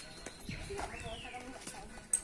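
Footsteps of people walking in sandals on a wet dirt road, light irregular clicks, with a bird calling several times in falling whistles.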